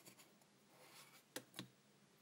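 Faint rubbing and scratching of fingers handling a small printed circuit board and fitting resistor leads through it, with two light clicks about a second and a half in.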